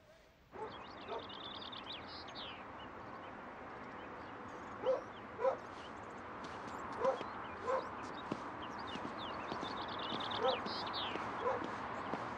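A dog barking in pairs of short barks, several times, over a steady outdoor background hiss.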